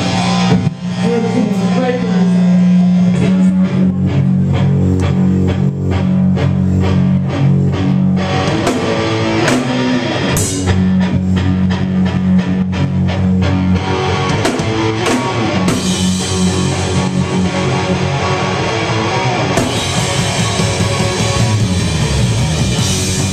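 Live rock band playing loud with electric guitar, bass and drum kit, an instrumental stretch with no singing, recorded close to the stage on a camera microphone. The playing gets denser about two-thirds of the way in.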